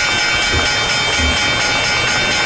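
Steady electric bell ringing, a stock-exchange bell sound effect used as the radio bumper into the Wall Street market report.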